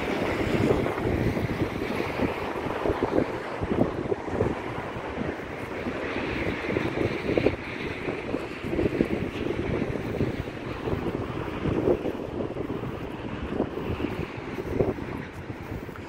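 Strong dust-storm wind buffeting the microphone in uneven gusts, with a steady rushing hiss.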